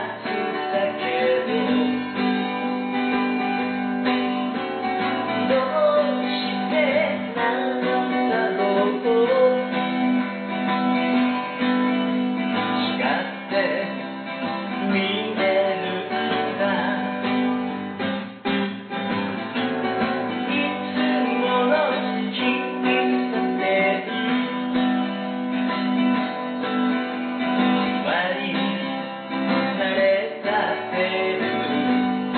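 Acoustic guitar strummed and picked as song accompaniment, with a voice singing over it in phrases.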